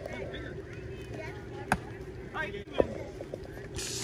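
Ball-field ambience with faint voices of players and spectators. A sharp knock comes about a second and a half in, and a weaker one near three seconds.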